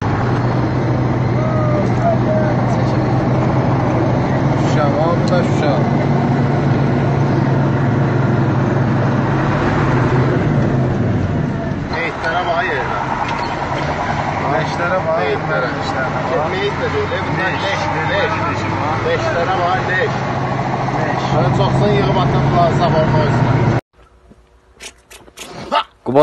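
Steady low drone of a vehicle's engine and road noise heard from inside the moving vehicle, with men's voices talking over it; it cuts off abruptly shortly before the end.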